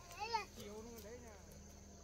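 A baby vocalizing: a short, high coo that rises and falls in pitch near the start, then a lower, longer babbling sound lasting about a second.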